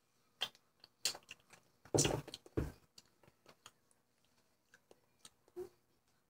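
Crunching and chewing on a small frozen cube in the mouth: a few sharp, separate crunches, the loudest pair about two seconds in, with quiet between them.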